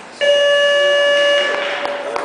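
An electronic buzzer sounds one loud, steady tone for about a second and a quarter, starting just after the start.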